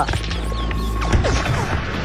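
Battle sound-effects bed: a low steady hum under scattered clicks and knocks and a thin steady high tone. The hum drops away about halfway through.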